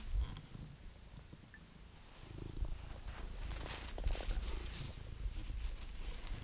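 Domestic cat purring close to the microphone as it is stroked: a low, steady rumble that grows louder about two seconds in, with soft rubbing of hand on fur.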